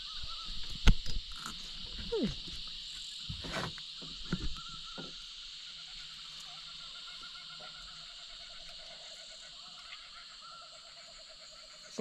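Frogs and insects calling: a steady high-pitched buzz, joined past the middle by a lower pulsing trill. A few knocks and handling noises in the first few seconds, the sharpest about a second in.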